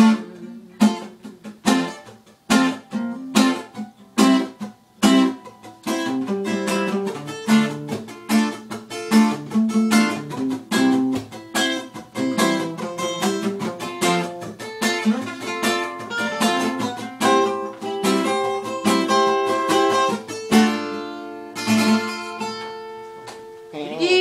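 Acoustic guitar playing alone without singing: sharp strummed chords about once a second at first, then busier, more sustained picking from about six seconds in.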